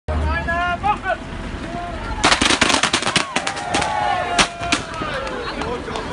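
A volley of handheld confetti cannons going off: a quick string of sharp pops beginning about two seconds in and lasting a couple of seconds.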